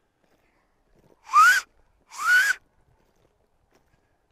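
Two short, loud, breathy whistles about a second apart, each rising in pitch, made close to the microphone.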